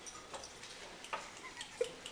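Wet bar of soap being rubbed and squeezed between hands, making a few irregular, short, wet clicks.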